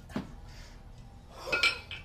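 Two 20 kg kettlebells clanking together with a ringing metallic clink as they drop from overhead into the rack position in a double kettlebell jerk, loudest about three quarters of the way in, after a brief sharp sound shortly after the start.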